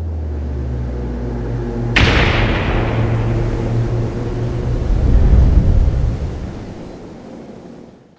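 Title-sequence sound design: a low steady drone, then a sudden cinematic boom about two seconds in whose rumbling tail swells and then fades out near the end.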